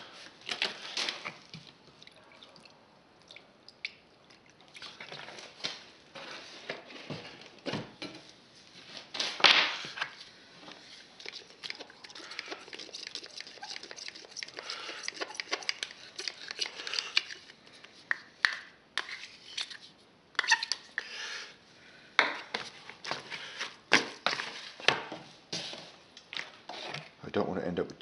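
Sculptamold being mixed with water and paint in a plastic bucket: irregular scrapes, taps and clinks of a small metal scoop against the bucket, with one louder knock about nine seconds in.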